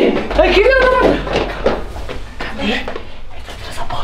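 People's voices in short exclamations, mostly in the first second, with a brief high-pitched cry about a second in and a few more words near three seconds.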